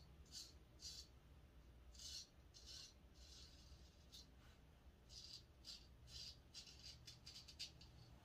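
Faint short scraping strokes of a stainless-steel Henckels Friodur straight razor cutting through two days' stubble under shaving lather, a dozen or so strokes that come quicker near the end.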